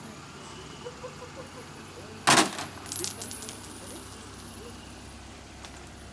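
A loud, sharp metallic crack about two seconds in, followed by a few lighter clinks and a brief high ringing, over a low background murmur.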